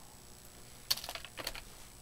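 Computer keyboard keystrokes: a short run of several quick key clicks about a second in, as code is pasted into the editor.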